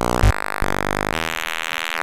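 Buzzing electronic drone from a Eurorack modular synthesizer patched from Mutable Instruments Stages and Tides and a Nonlinear Circuits Neuron, a harsh noise-music tone whose timbre jumps abruptly twice.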